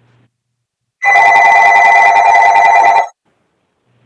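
A telephone ringing: one loud electronic ring with a rapid flutter, starting about a second in and lasting about two seconds.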